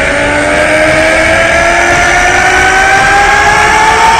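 A man's long, held scream, rising slowly in pitch throughout: an anime fighter's power-up yell, over a steady rushing noise.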